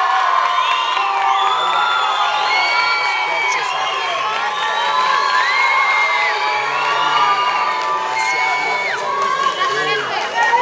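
Audience cheering and shouting, with many high-pitched calls overlapping as a dance couple is introduced.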